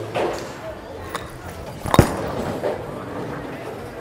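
Bowling alley background: faint voices and the din of the lanes, with one sharp knock about two seconds in.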